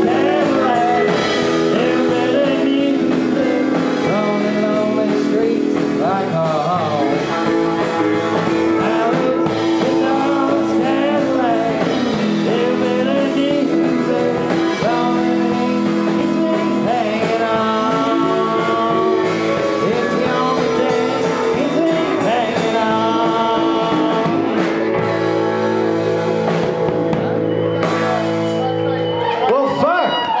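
A live band playing a fast song: guitars, keyboard and a man singing into a microphone.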